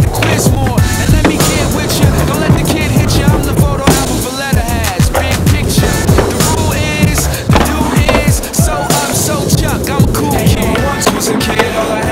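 Hip-hop track with rapped vocals, over the sound of skateboard wheels rolling and the board knocking on wooden ramps and concrete.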